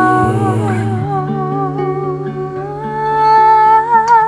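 Soul-jazz song: a woman's wordless vocal holds long notes with vibrato, stepping up to a higher held note about three seconds in, over guitar and bass.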